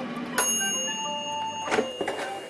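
Air fryer's mechanical timer bell dings once about half a second in, its ring fading over about a second, with a click near the end. Light background music with short melody notes plays underneath.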